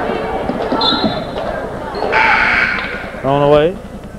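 A basketball bouncing on a gym's hardwood floor among the voices of players and spectators during a game, with a short high squeak about a second in and a loud shout that rises in pitch near the end.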